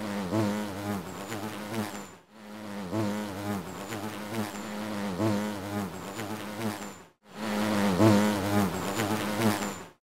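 Buzzing bee sound effect: a steady low buzz that wavers in pitch and cuts out briefly twice, about two seconds in and about seven seconds in.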